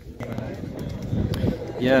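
Crowd chatter: many people talking at once. It starts suddenly about a quarter second in, with a few light knocks mixed in, and one man's voice comes up clearly near the end.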